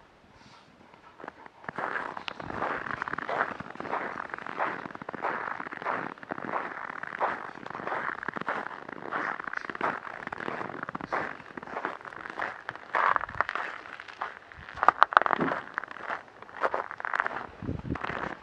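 Footsteps crunching through packed snow, an irregular crackling that starts about a second and a half in and keeps going, with a few sharper, louder crunches near the end.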